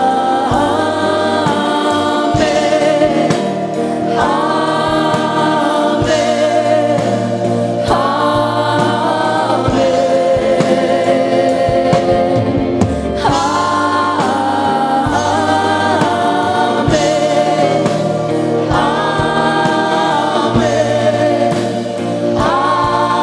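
A live church worship band plays while several men and women sing together into microphones in phrases of a few seconds, backed by guitar and drums.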